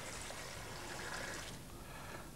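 Water poured from a jug onto the car deck of a scale-model ro-ro ferry, flooding the deck: a faint, steady trickle that tails off about one and a half seconds in.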